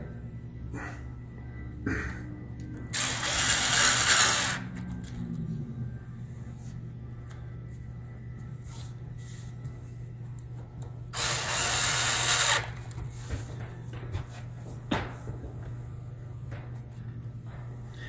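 Cordless screwdriver driving the small screws of a 2.5-inch hard drive's mounting bracket, in two short runs of about a second and a half each, several seconds apart, with a few small clicks between. A steady low hum runs underneath.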